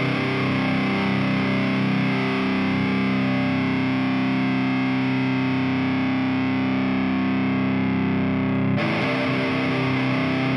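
Distorted electric guitar played through a Diezel Herbert amp simulator plugin on a high-gain lead setting, chords left ringing. A new chord is struck near the end with a brighter, fizzier tone.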